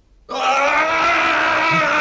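A person's loud, long cry that breaks in suddenly about a quarter of a second in and is held at a nearly steady pitch.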